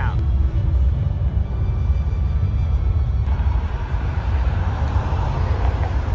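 Steady low outdoor traffic rumble, with a louder rushing noise swelling in from about halfway through, like a passing vehicle.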